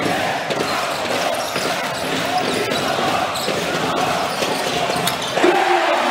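Basketball arena game sound: a large crowd's steady noise with a ball bouncing on the hardwood court as irregular sharp knocks. About five and a half seconds in, the crowd swells with a long falling call.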